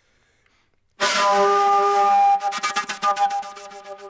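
Soundtrack music opening with a sudden loud, breathy wind-instrument note about a second in, held for over a second, then breaking into rapid stuttering pulses, about ten a second, that die away.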